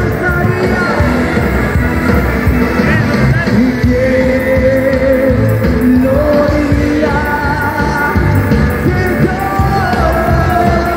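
Live worship band playing through a PA: electric guitars, drums and keyboard under a singer holding long notes.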